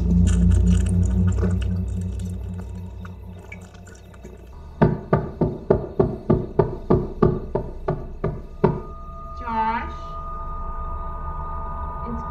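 A low drone fades away over the first few seconds. Then about a dozen rapid knocks on a wooden door, roughly three a second, run for about four seconds. A short wavering voice-like sound and a steady held tone follow.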